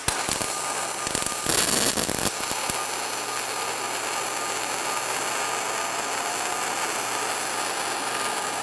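Spray-transfer MIG welding arc from an ESAB Rebel 235 at about 290 amps and 27.7 volts: a steady, dense hiss, louder for about a second near the start. The voltage is set half a volt up to lengthen a slightly short arc that had been crackling.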